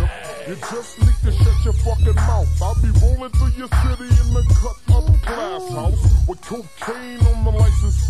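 Slowed-down, 'screwed' hip hop mix: a rapper's voice over a deep bass line held in long notes and hard drum hits.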